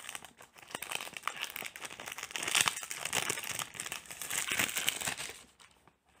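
Clear plastic wrap being torn and crumpled off a boxed perfume by hand: a dense run of crinkling and crackling that dies away about five seconds in.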